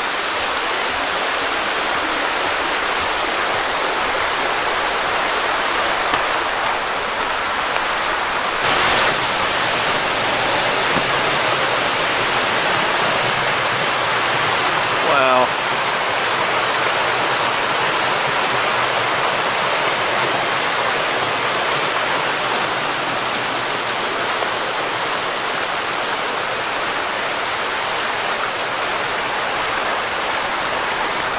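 Rocky creek rushing over small rapids and cascades: a steady, loud rush of water. A brief pitched sound cuts in about halfway through.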